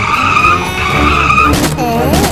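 Tyres squealing as old race cars push against each other, over a low engine rumble, with a sharp bang about one and a half seconds in.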